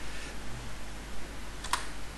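A single sharp click of a computer keyboard key about three quarters of the way through, over a low steady hum.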